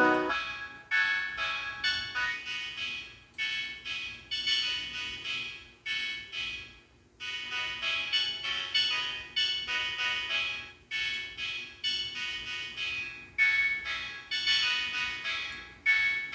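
Playback of a beat made on an MPC: a high-pitched melody of short notes, each dying away quickly. The lower part drops out right at the start, and there is a brief break about seven seconds in.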